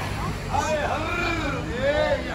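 People talking as they walk past market stalls, voices rising about half a second in, over a steady low rumble of street noise.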